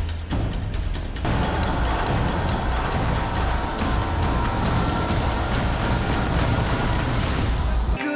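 Music with a regular beat. About a second in, a dense, loud wash of noise comes in: fireworks bursting and crackling over the music.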